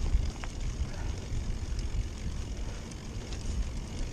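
Mountain bike rolling over a dirt track, with wind buffeting the helmet-mounted microphone over a steady low rumble of tyre noise and a few scattered small clicks.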